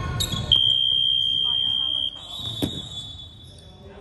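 Basketball scoreboard buzzer sounding one steady high tone for about a second and a half, marking the end of the quarter, followed by a fainter tone that fades out. A single sharp knock, like a ball bounce on the hardwood floor, comes about two and a half seconds in.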